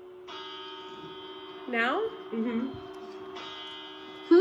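Bell chimes of the New Year's midnight countdown, the strokes that mark each of the twelve grapes: two strikes about three seconds apart, each ringing on steadily. A voice gives a short rising call between them.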